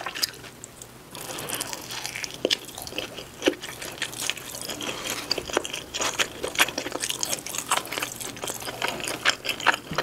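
Close-miked chewing of pepperoni cheese pizza: a steady run of wet, sticky mouth sounds and small clicks, a little quieter in the first second.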